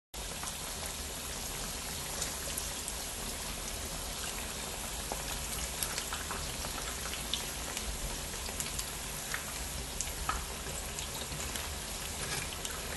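Corn fritters deep-frying in hot oil in a pan: a steady sizzle scattered with sharp crackles and pops.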